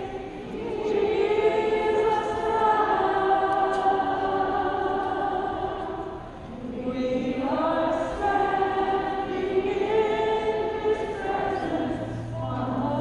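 A group of women singing together in long held phrases, led by one woman's voice, with a short pause for breath about halfway through.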